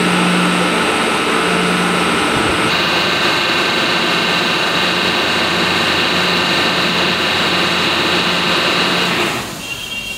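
Electric motor driving the lifting platform of a direct-cooling block ice machine, running with a steady mechanical whine. A higher tone joins about three seconds in, and the motor cuts off abruptly about nine seconds in.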